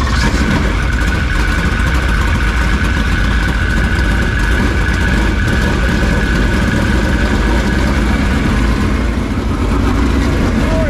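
Dirt late model's V8 racing engine running steadily in the pits, a loud, even rumble with a steady higher whine over it.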